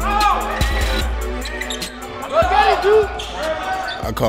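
Basketball practice on a hardwood court heard over a music track: the ball bouncing and sneakers squeaking in short arching squeals, with one cluster just after the start and another around two and a half to three seconds in.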